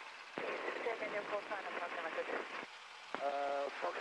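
Speech over an aircraft headset's intercom and radio, thin and tinny. A held "uh" comes near the end.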